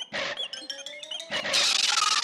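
Cartoon soundtrack: light music with short bright notes, then, about one and a half seconds in, a loud rushing whoosh effect as the little car speeds away.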